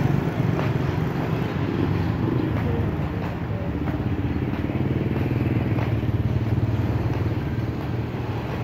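Motorbike engine running steadily close by, a continuous low hum amid street traffic.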